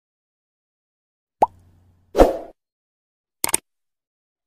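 Editing sound effects for a subscribe-button animation: a sharp pop about one and a half seconds in, a short noisy burst just after two seconds, and a quick double mouse click near the end.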